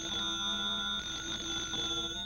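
Telephone bell ringing: one long, steady ring.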